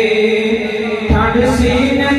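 A man's voice singing a naat into a microphone, holding a long note and then starting a new phrase about a second in.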